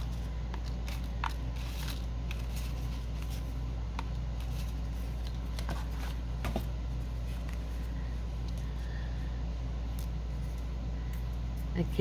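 Paper clippings rustling and sliding as fingers rummage through a plastic tray of cut-out words, with scattered light clicks and taps, over a steady low hum.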